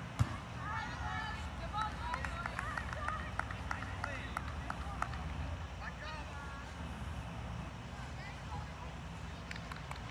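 Women's voices calling and shouting across an outdoor soccer field, too far off for words to be made out, over a steady low rumble. There are scattered short knocks, and a sharp thump just after the start.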